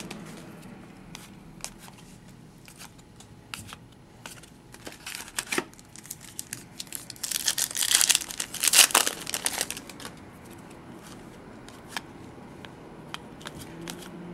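Foil wrapper of a hockey card pack being torn open and crinkled by hand. Light rustles and crackles come and go, and there is a louder run of tearing and crinkling about eight seconds in.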